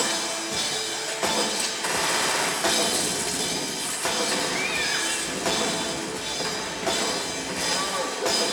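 Live rock band playing: electric guitar and drum kit under a lead singer's vocals, heard from the audience in a concert hall.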